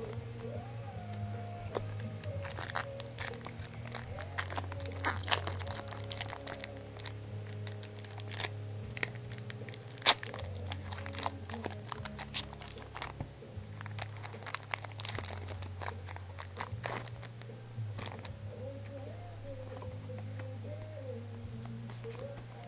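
Foil Pokémon booster pack wrapper crinkling and tearing as it is opened: a long run of crackles, the sharpest one about ten seconds in, dying away near the end. Quiet background music underneath.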